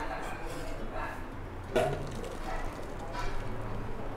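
Thick dosa batter being handled in steel pots: soft wet plops and light knocks of the vessels, with one sharper knock a little under two seconds in, under a faint voice and a low steady hum.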